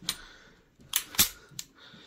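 Sharp metallic clicks from a .455 Webley top-break revolver being handled with its action open: two clicks about a second in, a fifth of a second apart, then a softer one.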